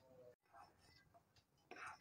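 Near silence, with a faint short sound near the end.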